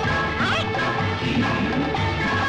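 Film background score with held, layered musical tones, overlaid with fight-scene impact sound effects.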